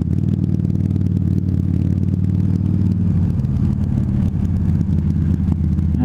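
Harley-Davidson V-Rod Muscle's V-twin engine with Vance & Hines slip-on exhausts, running steadily under way at low speed, heard from a microphone inside the rider's helmet. The engine note changes about three seconds in.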